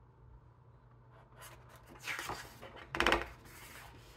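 A page of a large hardcover book being turned by hand: a paper rustle starting about a second in, then a louder slap as the page lands flat about three seconds in, followed by a few faint ticks.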